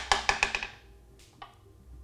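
Small steel ball dropping onto a hard surface and bouncing: a sharp knock, then a quick run of clicks that come faster and fade out within about three-quarters of a second, followed by a couple of faint ticks. It falls off a thin steel plate because the smart magnet's field does not leak through the plate to hold it.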